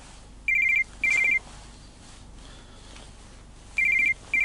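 Telephone ringing with an electronic trill: a double ring of two short warbling beeps about half a second in, and the next double ring starting near the end.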